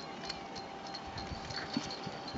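Outdoor ski-slope background noise: a steady hiss with a faint hum, scattered light clicks, and a few soft low thumps in the second half.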